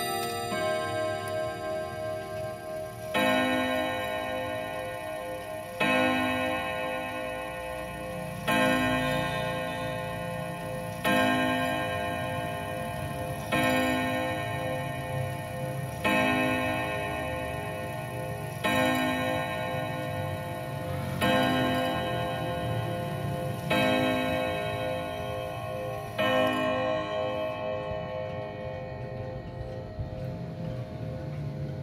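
Junghans three-train wall clock striking the hour on its eight-rod steel gong: ten identical strokes about two and a half seconds apart, each ringing on long, after the last chime notes ring out at the start. The pendulum ticks steadily underneath.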